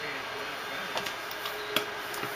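Trading cards and their hard plastic holders being handled: a few light clicks and taps, about a second in and again near the end, over a faint steady hum.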